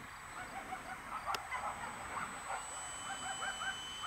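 Faint outdoor background with short, repeated bird calls, and under them a thin, steady, high-pitched whine. A single sharp click sounds about a third of the way in.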